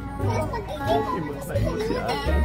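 A high-pitched voice, speaking or singing, over background music with low bass notes.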